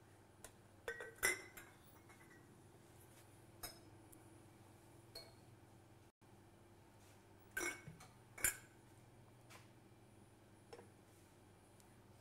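Ceramic pour-over dripper and glass carafe clinking as they are handled and set down on a counter: about eight separate sharp knocks spread over several seconds, the loudest about a second in and again near eight and a half seconds. A low steady hum runs underneath.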